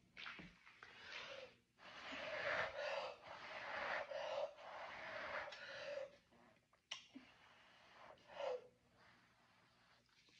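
A person blowing hard breaths across wet acrylic pour paint, a run of about seven long, hissy blows with short pauses between, then one short puff near the end. The blowing spreads the poured paint outward so that it opens into cells.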